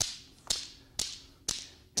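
Steel balls of a Newton's cradle clacking together as two balls swing in and two swing out at the other end. Four sharp metallic clicks come about half a second apart, each with a brief high ring.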